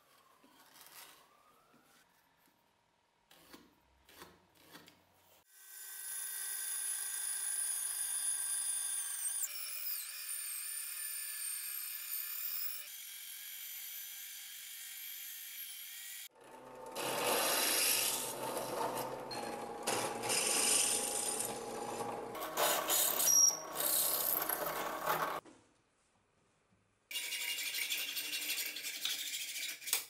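Band saw cutting through an ash-wood handle blank for about nine seconds, the loudest part, after a stretch of the saw running with a steady whine. After a brief gap near the end, a hand frame saw cuts the wood.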